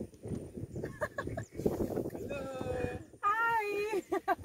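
People's voices talking, with one long, wavering drawn-out vowel in the last second.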